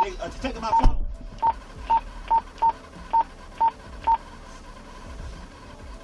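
A run of seven short electronic beeps, all at one pitch and unevenly spaced over about three seconds, like key-press tones from a keypad or terminal, after a brief muffled voice at the start.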